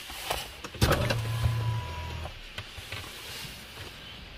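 Automatic car-wash machinery heard from inside the car's cabin as the wash cycle begins: a sharp clunk about a second in, then an electric motor hums for about a second and a half and stops, with scattered ticks around it.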